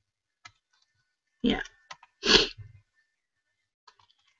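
A person saying "yeah" once, followed about a second later by a short breathy vocal sound, with a few faint clicks around them and silence in between.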